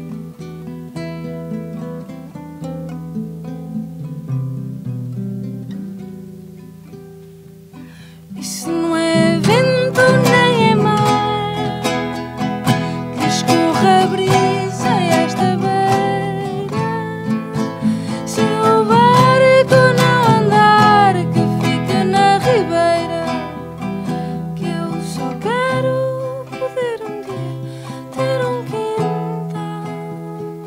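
A small acoustic string instrument and an acoustic guitar are plucked together in a soft, ringing accompaniment. About eight seconds in, a woman's voice comes in louder, singing long, gliding held notes over the strings.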